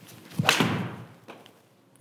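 A forged Mizuno MP20 MMC six iron strikes a golf ball off a hitting mat: one sharp strike about half a second in that dies away over about half a second.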